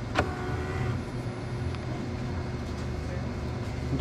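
Franke automatic coffee machine running as it prepares a drink: a steady mechanical hum, with one short sharp sound just after the start.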